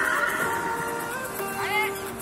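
Background music, with a short, high neigh from a horse near the end.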